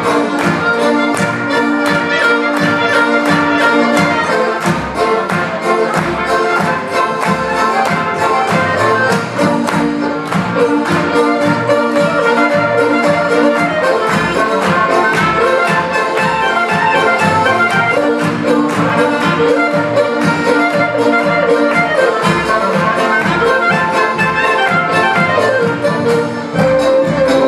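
Polish folk band playing a lively polka: accordions, violins, clarinet, trumpets and double bass over a steady beat.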